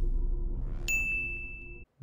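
The tail of a logo intro sting: a low rumble fading away, and a bright single ding about a second in that rings for most of a second before everything cuts off abruptly.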